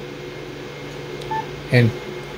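A single short, high beep from a Yaesu FT-991A transceiver about a second in: the radio's tone confirming a touchscreen key press. A steady low hum runs under it.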